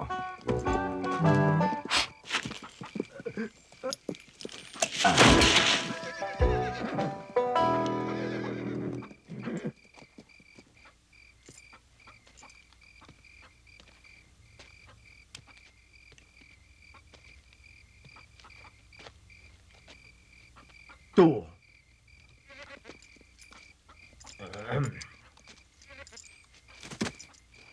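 Film score music for about the first nine seconds, with a horse whinnying loudly about five seconds in. Then a quiet stretch with a faint steady high tone, broken by a short loud cry about 21 seconds in and softer sounds near the end.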